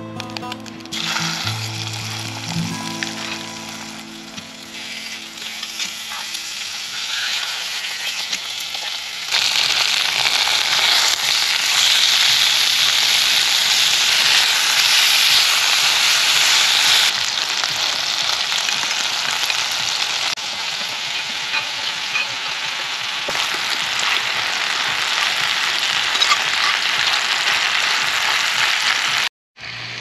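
Chicken pieces searing skin-side down in melted butter in a cast-iron Dutch oven: a steady sizzle that gets louder about nine seconds in.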